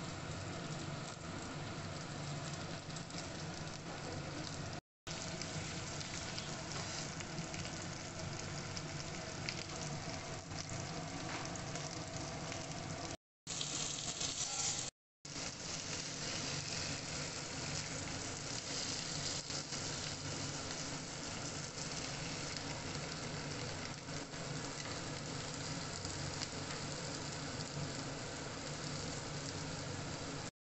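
Masala-coated pomfret and sliced onions sizzling steadily as they fry in hot fat in a nonstick pan, the hiss cutting out briefly three times.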